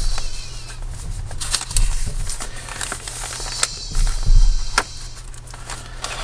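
Hands handling the paper and cardstock pages of a handmade journal: scattered rustles and light paper clicks, with a few soft low thumps of the book shifting on the table.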